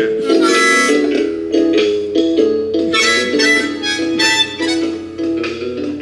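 Diatonic harmonica played in short chordal phrases, loudest about half a second in and again from about three to four and a half seconds. Underneath is a steady recorded backing beat from a portable boombox.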